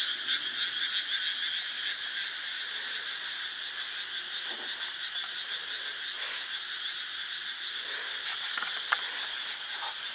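A dense chorus of small rice-paddy frogs calling at night, a steady unbroken mass of croaking that eases slightly in level over the first few seconds.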